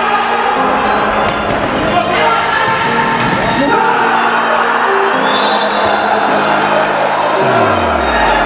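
Background music over the game sound of an indoor futsal match: ball kicks and bounces on the wooden court, echoing in the hall. A falling sweep is heard near the end.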